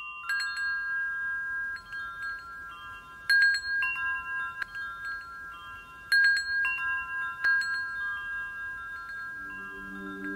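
Metal tube wind chimes ringing, their clear overlapping tones struck again every second or so, with the strongest clusters of strikes a little over three seconds in and again about six seconds in. A low steady tone fades in near the end.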